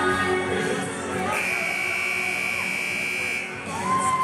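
Gymnasium scoreboard buzzer sounding one steady, high buzzing tone for about two seconds, starting a little over a second in: the end-of-game signal, with the clock at zero.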